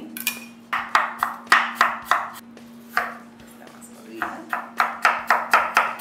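A chef's knife chopping apple on a wooden cutting board, in two quick runs of strokes about four a second, with a single stroke between them.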